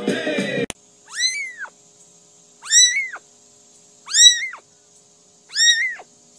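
A small kitten meowing four times, evenly spaced about a second and a half apart. Each is a short, high call that rises and then falls in pitch. Before the first meow, music cuts off suddenly under a second in.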